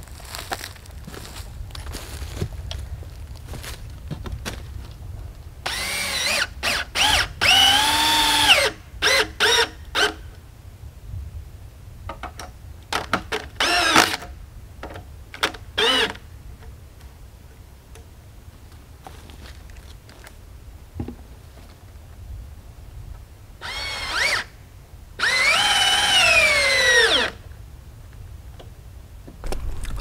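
Cordless drill driving screws through a 2x4 guide board into a log, in several bursts of motor whine that rise in pitch as the trigger is pulled and fall away as each screw seats. The longest runs are about two seconds, one a quarter of the way in and one near the end.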